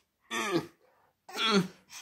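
Two short wordless vocal sounds, each about half a second long and falling in pitch, about a second apart.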